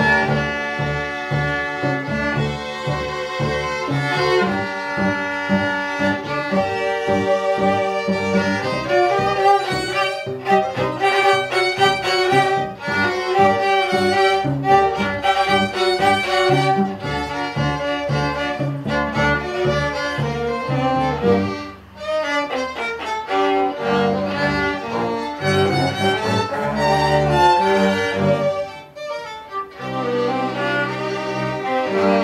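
A small string ensemble of violins, cello and double bass playing a piece together, with a short break in the sound about two-thirds of the way through and another near the end.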